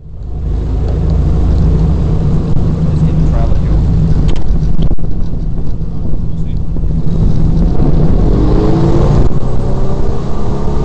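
Jet boat engine driving a Hamilton water jet, running loud and steady close to the bow; about eight seconds in its note rises as the boat speeds up across the river.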